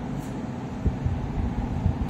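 Steady fan noise from an evaporative (swamp) cooler running, with a faint click a little under a second in.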